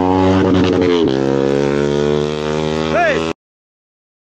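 A motorcycle engine idling with a steady drone and a slight pitch change about a second in, with voices over it. The sound cuts off suddenly near the end.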